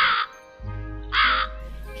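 Two harsh crow caws about a second apart, over soft, gentle background music.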